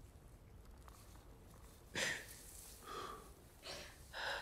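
A person's breathy gasps, three short ones in the second half, the first the loudest.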